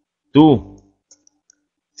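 A man's voice says one word, then a few faint, short clicks of computer keyboard keys follow about a second in.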